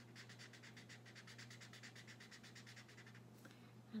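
Faint rapid back-and-forth scratching of a felt-tip marker colouring in on paper, about eight or nine strokes a second, stopping about three seconds in.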